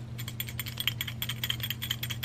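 Two small jingle bells sewn together on a ribbon hair bow, shaken close to the microphone: a quick, uneven run of light clicking jingles starting just after the beginning. The bells barely ring; they mostly knock against each other.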